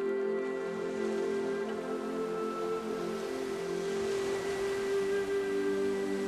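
Slow new-age ambient music of long held chords over the wash of sea surf, which swells about halfway through.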